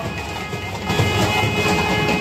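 Nadaswaram reed pipes playing held, reedy notes over thavil and other procession drums, getting louder about a second in.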